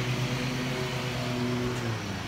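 Zero-turn riding mower's engine running at a steady speed with a constant low hum while it mows.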